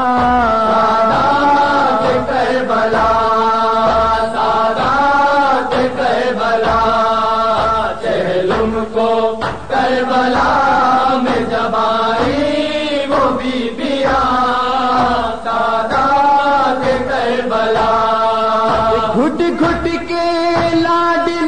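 A noha, a chanted mourning lament for Imam Hussain, sung in long held, wavering notes over a steady beat of low thumps.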